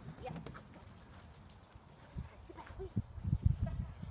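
Running footfalls of a dog and its handler on grass, with a few short faint voice calls. Low thuds grow louder over the last second.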